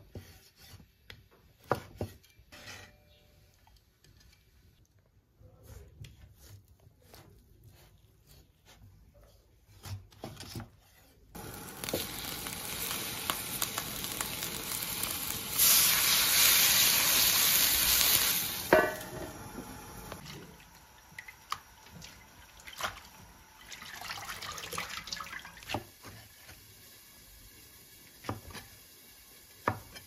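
Cleaver strokes tapping on a chopping board as sausage is sliced. From about a third of the way in, a steady hiss from a wok of cured pork on the stove, loudest for about three seconds in the middle as water is ladled into the hot wok, then scattered knocks and taps.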